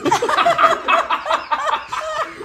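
A group of people laughing, with quick rising and falling high-pitched notes.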